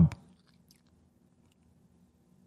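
A man's word trails off at the very start, then a pause with only a faint steady low hum and a few faint small clicks of mouth noise close to the headset microphone.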